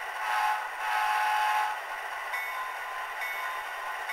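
Soundtraxx Tsunami sound decoder in an HO-scale E8 model locomotive playing its five-chime air horn through tiny speakers: a short blast, then a longer one. A little over two seconds in, the locomotive bell starts ringing about once a second.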